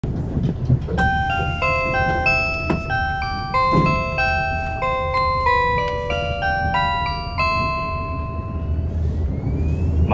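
A bell-like chime melody plays over the train's public-address system, signalling the automated announcement that follows, over the steady low rumble of a Kiha 183 series diesel express running. The tune lasts about seven seconds, and a faint rising tone is heard near the end.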